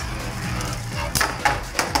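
Two Beyblade Burst spinning tops whirring steadily in a plastic stadium bowl, then clacking sharply against each other a few times in the second half.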